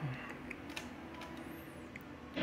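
A few faint clicks from the pushbuttons of a Sony ST-333S tuner being pressed, over quiet room tone.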